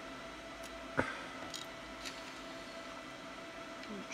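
Hands handling a Raspberry Pi board and its plastic 3D-printed case: one sharp click about a second in and a few faint ticks, over a steady faint hum of running equipment.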